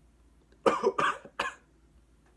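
A man coughing three times in quick succession, a reaction to snorting a pinch of Scotch nasal snuff that hit harder than he expected.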